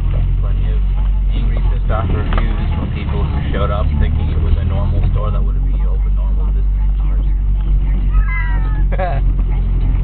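Car engine and tyres on a wet road, heard from inside the cabin as a steady low drone while the car rolls slowly. Near the end comes a brief wavering high-pitched cry.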